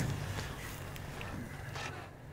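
Quiet outdoor background with a faint steady low hum, just as a man's singing trails off at the start.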